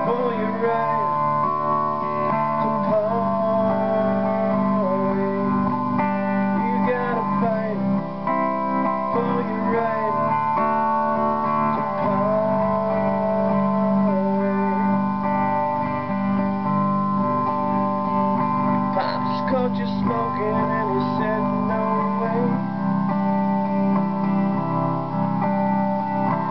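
Electric guitar strummed with a pick, ringing chords in a slow, steady arrangement. At intervals a man's low voice sings over the strumming.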